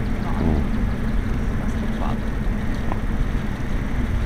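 Steady low outdoor rumble with faint distant voices.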